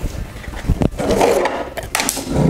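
Footsteps and a few sharp knocks as someone hurries off, with some rustling between them.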